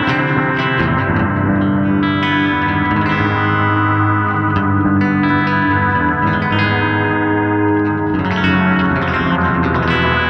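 Single-pickup Novo Solus F1 electric guitar played through a distorted amp: sustained chords ring out, with a new chord struck every second or two.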